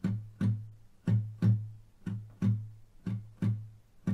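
Steel-string acoustic guitar, the right hand picking the low bass strings of a blues chord shape in a steady rhythm. The plucked notes fall in pairs about a second apart, each ringing briefly and dying away before the next.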